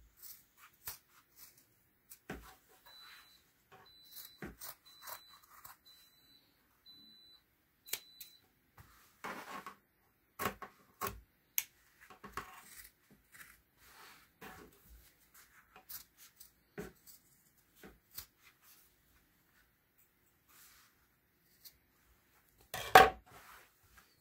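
Scissors snipping through heavy denim in a series of separate short cuts, with a louder scrape or knock near the end.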